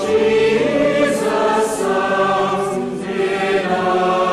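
A choir singing slowly, several voices holding long notes that change about every second.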